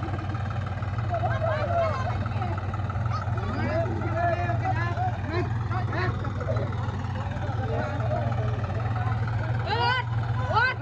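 A John Deere tractor's diesel engine running at a steady low drone, with several onlookers talking and calling out over it.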